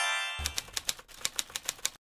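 Typewriter keystroke sound effect: about a dozen quick clicks, roughly seven a second, following the tail of a rising musical sweep, then cutting off abruptly.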